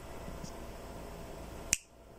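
A steady low background hum, then a single sharp click near the end, after which the hum drops away.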